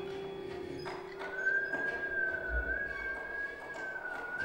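Violin and cello improvising with bows. A held lower note fades away, and about a second in a high, slightly wavering note enters and is sustained.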